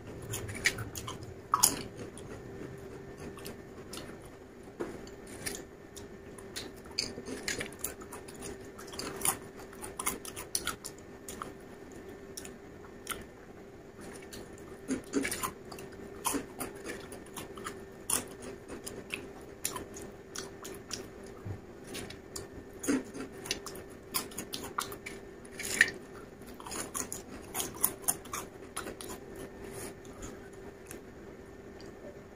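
Crisp potato chips crunched and chewed close to the microphone, in irregular sharp crackles, over a faint steady hum.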